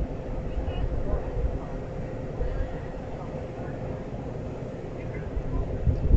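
Outdoor camera-microphone audio at a standing passenger train: wind rumbles on the microphone in gusts, with a steady faint hum beneath and faint distant voices.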